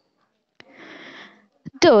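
A narrator's audible in-breath, a soft breathy hiss lasting about a second, taken between spoken sentences; speech starts again near the end.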